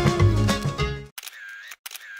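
Background music stops abruptly about halfway through. It is followed by two camera-shutter sound effects in quick succession.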